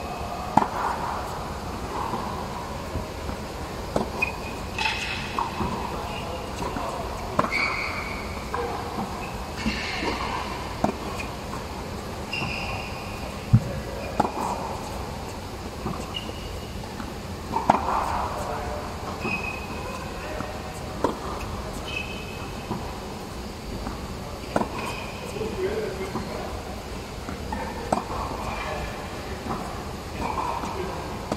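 Tennis balls fed by a ball machine and struck back with a racket, a sharp pop every few seconds, over voices from the surrounding courts.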